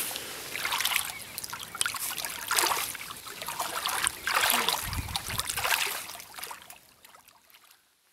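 A hand moving through shallow stream water, sloshing and trickling in several uneven surges, with a low bump about five seconds in. It fades out near the end.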